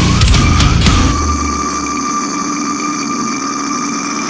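Brutal death metal: the full band of pounding drums and down-tuned guitars stops about a second in. A single high, steady held tone is left ringing on its own, sustained guitar or feedback in the break.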